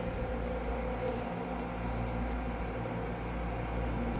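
Steady low hum and hiss of indoor shop ambience, with no distinct events.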